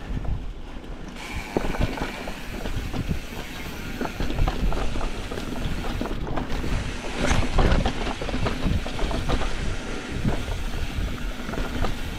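Mountain bike descending a dirt trail at speed: tyres running over dirt and roots with a constant rattle of chain and frame and frequent small knocks, busiest in the middle.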